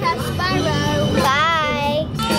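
A girl singing, holding a long wavering note in the second half.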